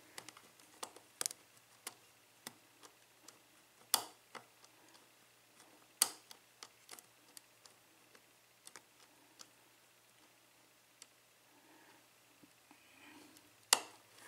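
Faint metallic clicking of a lock pick and tension wrench working the pin stack of an EVVA euro pin-tumbler cylinder, the pins being lifted and set one at a time. A few sharper clicks stand out, about 1, 4 and 6 seconds in, and one just before the end as the last stuck pin sets and the plug turns.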